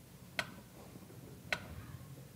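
Mechanical pyramid metronome ticking slowly: two sharp ticks a little over a second apart. It is set at 45 beats a minute to let a listener hear a dangerously slow heart rate (bradycardia).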